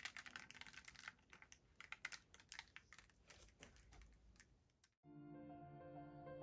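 Faint, irregular small clicks and taps as a wet acrylic-poured canvas is tilted in gloved hands and paint drips off its edges onto paper below. About five seconds in, this cuts suddenly to soft background music.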